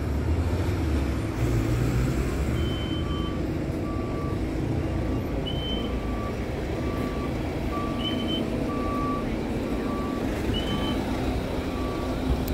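Vehicle reversing alarm beeping steadily, about one and a half beeps a second, starting about three seconds in, over a low idling engine and street traffic. A higher, shorter chirp repeats every couple of seconds alongside it.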